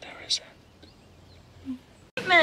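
Soft, close breathing of a couple kissing, with a short kiss smack about a third of a second in and a brief soft hum near the end.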